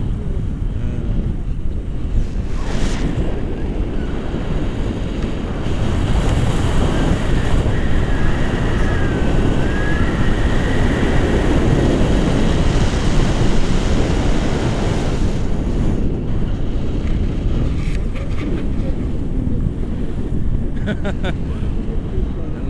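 Wind rushing over an action camera's microphone in paraglider flight, a steady low rush that swells louder for about ten seconds in the middle.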